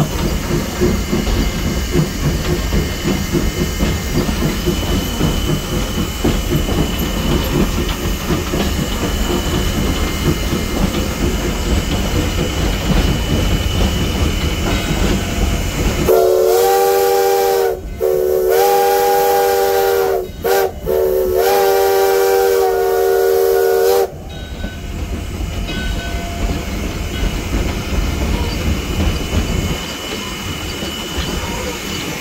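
Cab of V&T #29, a 1916 Baldwin steam locomotive, under way: a rumble with steam hiss and rail clatter. About halfway through the whistle sounds a chord of several tones in four blasts, long, long, short, long, the grade-crossing signal, for about eight seconds before the running noise returns.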